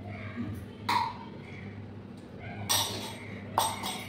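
A steel spoon clinking against a stainless steel bowl and plate-ware during a meal: three short, sharp clinks, about a second in and twice near the end.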